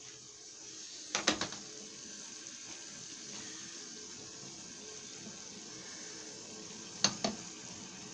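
Meat tagine simmering on the stove, a steady low bubbling of the broth, with two brief clusters of sharp clicks about a second in and near the end as tomato slices are laid on.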